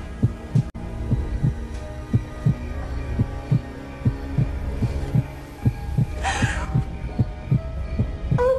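Film underscore: low paired thumps like a heartbeat, about one pair a second, over a sustained low drone. A brief breathy hiss comes about six seconds in.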